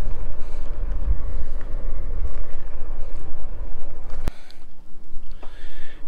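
Wind buffeting the microphone of a handlebar camera on a moving electric bike, with a steady low rumble. About four seconds in there is a single sharp click, and the rumble drops away to a quieter stretch.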